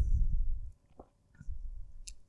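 Handling noise from a MacBook Pro in a black plastic-and-TPU case being pressed down and then lifted by hand: dull low rumbling with a faint click about a second in.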